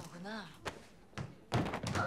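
A woman's voice speaking quietly in drama dialogue, then a sudden impact about one and a half seconds in.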